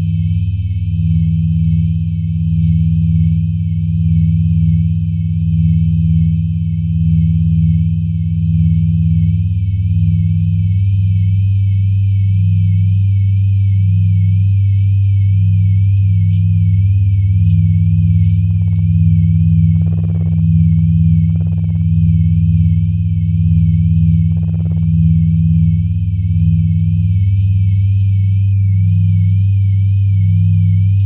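Minimal electronic drone music: a loud, steady low tone with a second tone just above it that flickers on and off, under a faint wavering high tone. A few brief soft sounds come in around two-thirds of the way through.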